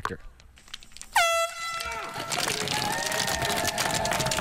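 An air horn gives one loud blast of about a second, starting about a second in, its pitch dropping sharply at the onset and then holding steady: the signal for a race start. It is followed by crowd cheering and a rapid clatter of sharp clicks, the rollerski poles striking the pavement.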